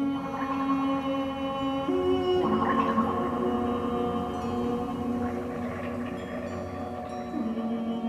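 Experimental water music on water instruments: several long, sustained tones layered into a chord. Its lower notes step up about two seconds in and drop back near the end, with a wash of splashing water noise in the middle. Everything is blurred by the very long echo of an underground water reservoir.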